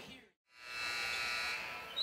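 A brief gap of silence, then a steady buzzing tone with many overtones fades in and holds for over a second, typical of an arena buzzer horn. At the very end a short high chirp rises.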